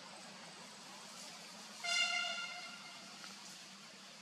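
A single vehicle horn honk about two seconds in: one steady, flat tone with many overtones, under a second long, fading out over a faint background hiss.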